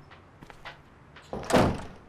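A door shutting with a single thud about one and a half seconds in, after a few faint knocks.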